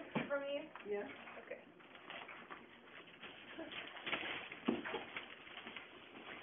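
A few short voice sounds in the first second, then faint rustling and handling noises with a couple of soft knocks about four to five seconds in.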